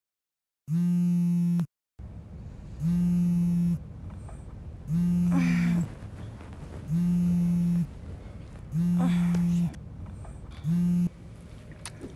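Mobile phone vibrating in an incoming-call pattern: six steady one-second buzzes about every two seconds. A woman groans sleepily twice between the buzzes.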